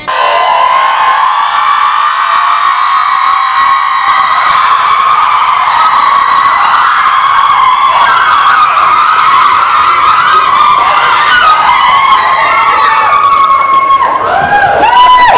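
A loud, steady, high electronic alarm tone, held without a break, which fits a school bell sounding for lunch. From about eight seconds in, wavering shrieks rise and fall over it.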